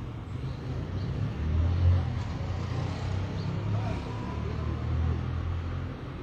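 A motor vehicle's engine running, a low steady rumble that swells about two seconds in and eases off near the end.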